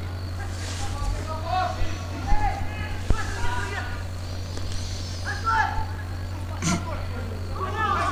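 Football-pitch ambience: distant voices shouting during play over a steady low hum, with a short knock about three seconds in and another near seven seconds.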